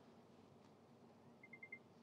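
Near silence: room tone, with four faint, quick high-pitched beeps about one and a half seconds in.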